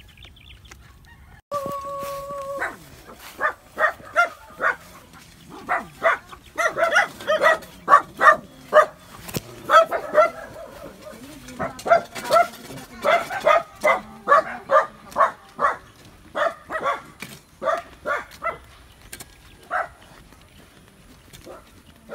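A dog barking over and over in quick runs of short barks. A single long held call comes first, about a second and a half in.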